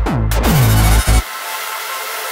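Old school hardcore (gabber) track: heavy distorted kick drums, each dropping in pitch, pounding about three times a second. The kick cuts out suddenly about a second and a quarter in, leaving a synth breakdown.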